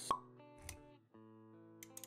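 Intro music with animation sound effects: a sharp pop just after the start and a short low thump a little over half a second later. Sustained music notes come back in about a second in, with a few light clicks near the end.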